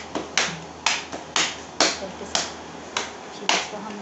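A run of about seven sharp snapping clicks, spaced roughly half a second apart in a loose rhythm.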